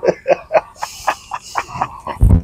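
A man laughing: a quick string of short laughs, about five or six a second.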